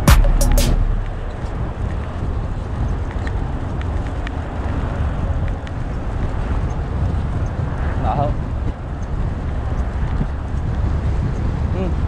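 Background music cuts out in the first second. Then steady wind noise on an action camera's microphone and tyre noise as a hardtail mountain bike rolls along a paved path, with a brief wavering chirp about eight seconds in.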